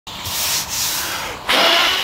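Sanding of the truck cab's panel during paint preparation, a rough, rushing noise that gets louder about one and a half seconds in.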